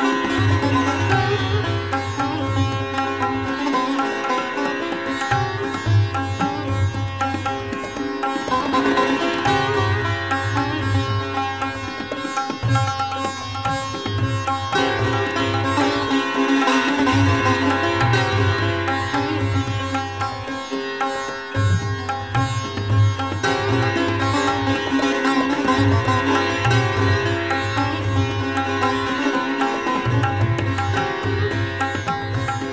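Sitar playing a fast drut gat in Raag Puriya, set to teentaal, with dense, continuous runs of plucked notes.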